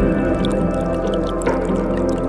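Ambient music of sustained, slowly shifting synth tones, with water drips and a gently trickling forest creek mixed in underneath.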